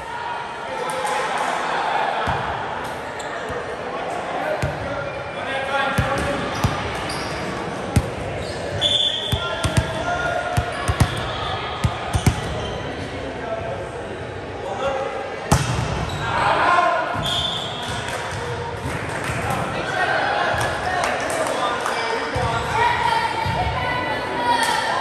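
Volleyballs thumping on a hardwood gym floor, with several sharp hits in a cluster about a quarter of the way in and another about two-thirds through. Players' and spectators' voices carry on throughout, echoing in the large hall.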